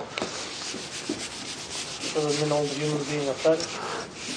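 A scratchy rubbing noise for about two seconds, then a brief indistinct voice murmuring over it in the second half.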